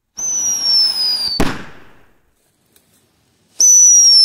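Whistling firecrackers: a loud, high whistle that falls slightly in pitch for just over a second, ending in a sharp bang that dies away over about half a second. Near the end a second firecracker starts the same whistle.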